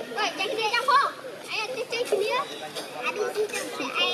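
Long-tailed macaques calling: a run of short, high, wavering squeals and chirps, several overlapping.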